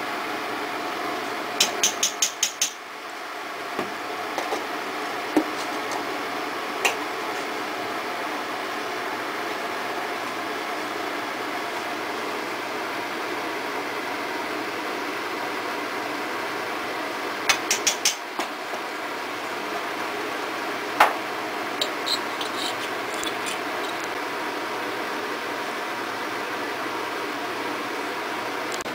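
A metal spoon taps and clinks against a glass spice jar and a steel cooking pot as spices are spooned and shaken into dal. The taps come in two quick runs of about five, near the start and about halfway through, with a few single clicks between. Under them runs a steady, fan-like background noise.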